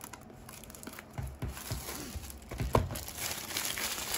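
Plastic shrink-wrap being torn and peeled off a trading-card booster display box, crinkling irregularly from about a second in.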